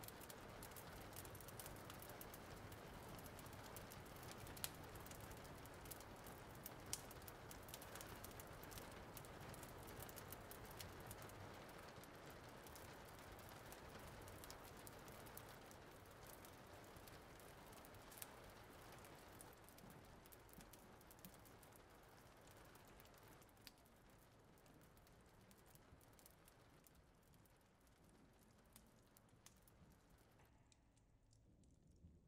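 Faint rain: a steady patter with scattered small drops clicking, slowly fading out through the second half.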